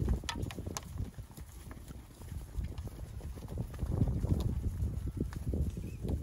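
Hooves of a mob of Angus heifers thudding on grass and dirt as they walk past, a busy, irregular run of footfalls that thins out briefly, then picks up again about four seconds in.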